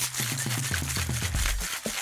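Ice rattling inside a metal cocktail shaker tin shaken hard to chill a drink: a fast, even run of clinks. Low background music plays underneath.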